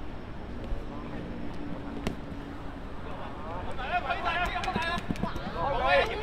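Football pitch sounds: quiet at first with a single sharp knock about two seconds in, then from about four seconds in young players' voices calling out across the pitch, louder toward the end.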